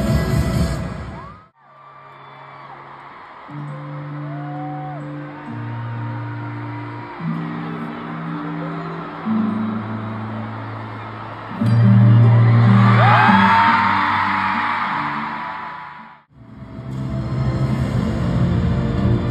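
Live stadium concert music recorded on a phone. After a short burst of full-band song, it cuts to slow low synth chords changing every second or two over the hiss of a large crowd. The crowd's screaming and cheering swells loudest about twelve seconds in. A cut near the end brings back loud music.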